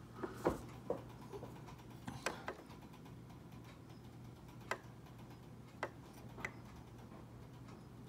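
Faint, scattered light clicks and taps from handling a removed car instrument cluster and touching it with a thin metal probe, over a steady low hum.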